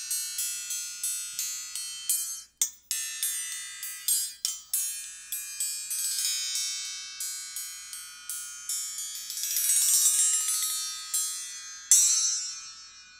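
High, bell-like metallic notes from a hanging coiled metal chime, struck about four times a second and twice stopped short. They swell into a dense shimmering wash near the end, and a last strike rings out.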